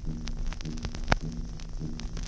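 Vinyl LP lead-in groove playing before the music: a steady low hum that pulses about twice a second, faint surface crackle, and one loud sharp click about a second in. The click comes back about every 1.8 s, once per turn of a 33⅓ rpm record, the sign of a scratch or mark on the disc.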